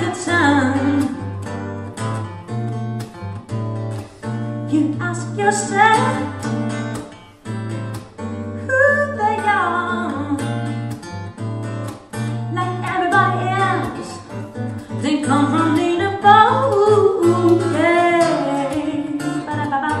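Steel-string acoustic guitar strummed in a funk rhythm with percussive strokes and a steady low bass line. Over it a woman sings long, wordless melismatic vocal runs in several phrases.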